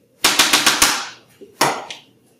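Metal painting scraper clacking against the paint-covered palette table while working the paint: a quick run of about six clacks, then one more sharp clack near the end.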